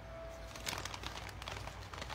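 Faint crackling and crinkling of a small peach cobbler being eaten, a run of small clicks starting just under a second in.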